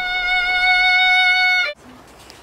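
A violin holding one long bowed note at a steady high pitch, which cuts off abruptly near the end.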